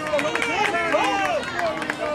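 Several voices calling out at once, overlapping, mixed with a few short sharp knocks.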